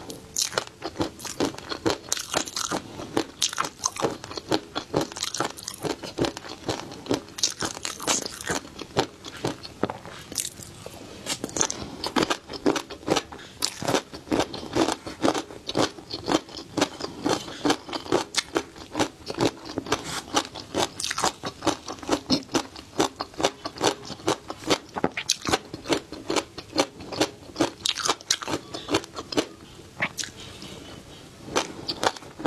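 Close-miked chewing of a crispy dish topped with flying fish roe: dense, rapid crunches, several a second, with a brief lull about ten seconds in.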